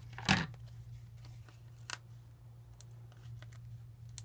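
Hands handling card stock and a sheet of foam adhesive dots on a cutting mat: one sharp tap about a third of a second in, then a few faint clicks and rustles. A steady low hum runs underneath.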